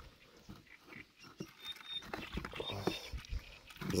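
Quiet handling noises from a crucian carp being taken up by hand on wooden boards: a few soft clicks and knocks begin about a second and a half in, with faint muttering.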